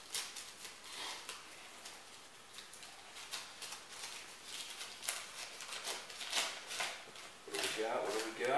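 A folded paper slip crinkling and rustling in short, irregular crackles as a child's hands unfold it; a voice comes in near the end.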